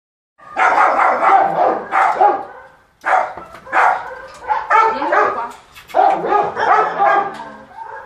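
A dog barking repeatedly in loud, quick bursts, with short pauses about three and six seconds in.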